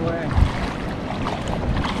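Wind buffeting the microphone over the steady wash of shallow sea water, with a brief low thump about half a second in.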